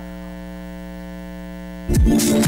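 A steady hum with a stack of even overtones, held flat and unchanging, like an electrical buzz left at the end of a jingle. Near the end it is cut off abruptly by loud electronic music starting.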